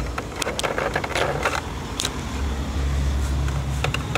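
Handling noise from a handheld camera being carried and turned: scattered clicks and rustles over a low rumble that grows stronger a little past the middle.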